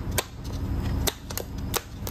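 Umbrella cockatoo stomping its feet on a hard floor: several sharp, irregular taps, about four in two seconds. The stomping is a sign of its displeasure.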